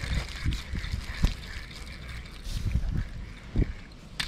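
Small largemouth bass splashing at the water's surface as it is reeled in on a spinning reel, with a few knocks of the rod and reel being handled, one sharp click about a second in.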